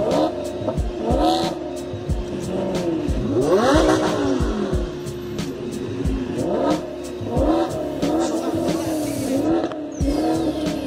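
Sports car engines revving up and down in repeated rises and falls, with music and a steady beat playing over them.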